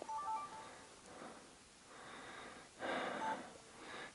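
A person breathing softly close to the microphone, one breath about every two seconds, with the clearest about three seconds in. A few short, faint high chirps come near the start and once near the end.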